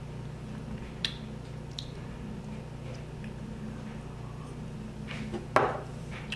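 A small drinking glass set down on a countertop with a sharp knock near the end, after a couple of faint clicks, over a steady low hum.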